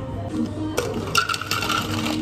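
Ice cubes clinking and clattering as they are tipped from a metal scoop into a plastic shaker, a quick run of sharp clinks in the second half, over background music.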